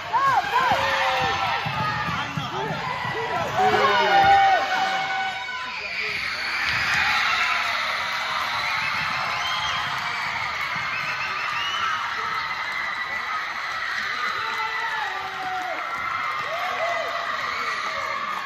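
Gym crowd cheering with girls shouting and screaming, and a buzzer sounding for about two seconds around four seconds in, marking the end of the game; the cheering and yelling then carry on as a steady din.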